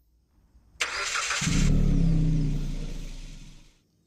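A vehicle engine starting: a short rattling crank about a second in, then a low engine hum that fades away.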